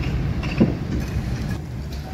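Steady low outdoor rumble, with a small knock about half a second in.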